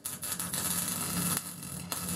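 Electric arc welding: the arc's steady crackling sizzle over a faint buzzing hum. It breaks off briefly about one and a half seconds in and strikes again just before the end.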